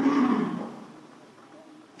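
A pause in a man's sermon: his last word trails off and fades in the room's echo over the first second, leaving only faint hiss from the recording.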